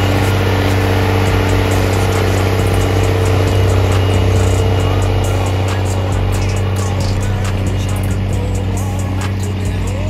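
Rába Steiger 250 articulated tractor's diesel engine running steadily under load while it pulls a disc harrow through stubble.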